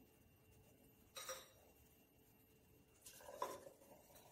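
Mostly near silence, with a faint click about a second in and a brief faint clatter about three seconds in, as vinegar is poured from a small cup into a glass jar of baking soda.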